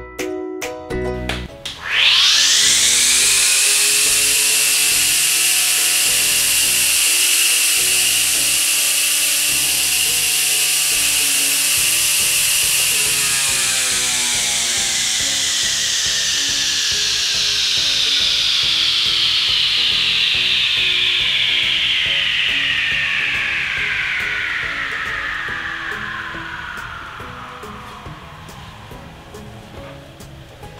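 Xenon CDGT720 20V cordless grass trimmer's electric motor spinning its circular metal blade. It whines up to speed about two seconds in and holds a steady high whine. Through the second half the pitch falls slowly and the sound fades as the blade coasts down.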